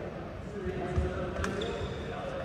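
A badminton racket hits a shuttlecock with a sharp crack about one and a half seconds in, just after a low thud, over the chatter of players' voices.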